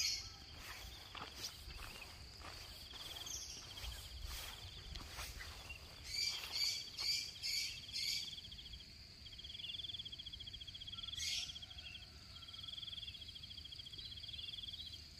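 Insects chirring in the open air: a steady high whine with repeated pulsing trills, each a couple of seconds long, and a quick run of short high chirps about six to eight seconds in.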